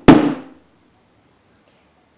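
A glass-encased vigil candle knocked down once against a cloth-covered table: a single sharp knock that dies away within half a second. It is the last of three ritual knocks that complete the candle's blessing.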